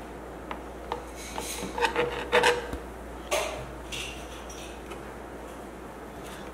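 Scattered light taps, clicks and scrapes of children's play-dough tools against plastic trays, busiest about two seconds in.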